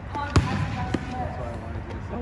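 A futsal ball struck once sharply about half a second in, with a fainter knock about a second in, on a gymnasium floor; players' voices call out around it.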